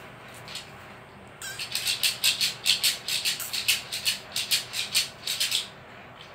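A toddler's plastic hand rattle shaken fast, about five shakes a second, for around four seconds. The shaking starts about a second and a half in and stops just before the end.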